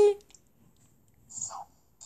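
The end of a spoken word, then quiet with one brief, soft breathy vocal sound about a second and a half in.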